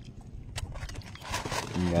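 A few faint, sharp clicks and taps in an otherwise quiet spell, with a short voiced sound just before the end.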